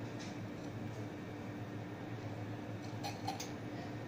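Steady low electrical hum of lab equipment, with three quick light clicks a little after three seconds in.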